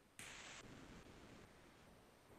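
Near silence: room tone, with one faint, brief rush of noise about a quarter second in.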